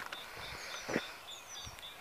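Birds singing outdoors: one repeats a short high note a few times a second among other brief chirps, over a light outdoor background noise. A soft thump about a second in.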